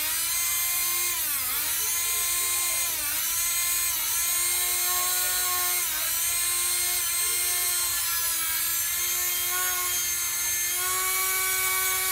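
Traxxas Titan 12T brushed electric motor running on a paper clip that stands in for a broken brush, held down by hand. It gives a steady whine that dips briefly in pitch several times and comes back up.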